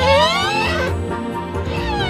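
A woman's drawn-out straining whine, gliding up in pitch and then back down, over background music.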